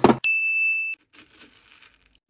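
Wax beads clatter in a metal scoop. A loud, steady, high ding follows a quarter-second in, holds for under a second and cuts off suddenly. Faint bead rattling comes after it.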